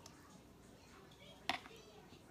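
Faint wire whisk stirring a thick, creamy dressing in a glass bowl, with one sharp click about one and a half seconds in.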